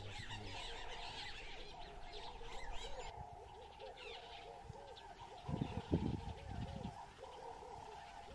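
Wild birds chirping and calling all around, many quick overlapping calls over a steady higher drone and a row of repeated lower calls. A little past the middle come a few low thumps and rustles, the loudest sounds here.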